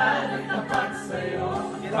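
A group of people singing together, several voices overlapping at once.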